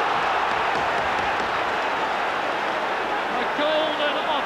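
Large football crowd cheering a goal just scored, a dense, steady wall of noise with no let-up.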